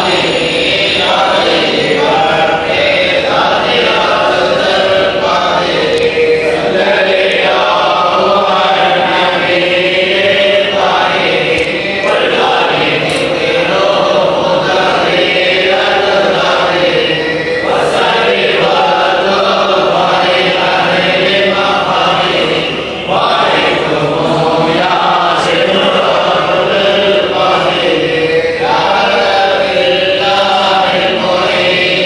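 A group of men chanting an Arabic devotional baith together, the voices sustained and continuous, with only a brief break about 23 seconds in.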